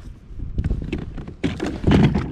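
A kayak's pedal drive unit being set down into the drive well of the plastic hull: a few dull knocks and clunks, the loudest near the end.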